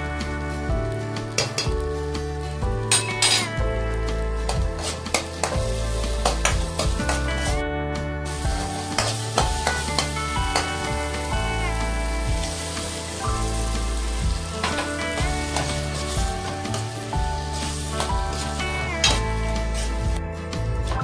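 Tomato-and-spice masala sizzling in oil in a kadhai while a steel ladle stirs it and scrapes and taps against the pan again and again. Instrumental background music plays throughout.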